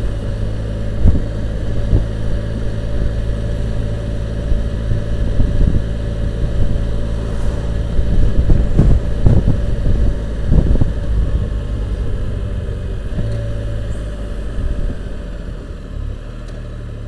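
Can-Am Spyder RT's three-cylinder engine running at low road speed, with irregular wind buffeting on the microphone. The engine sound eases off near the end as the trike slows.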